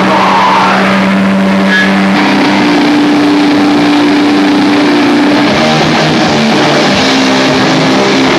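Doom metal band playing live: distorted electric guitars hold long sustained chords, moving to a higher chord about two seconds in and changing again around six seconds.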